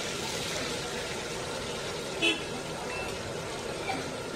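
Battered eggplant slices (beguni) deep-frying in hot oil in a karahi, a steady sizzle as they are turned with a metal spatula, with one short loud sound a little over two seconds in, over street traffic and voices.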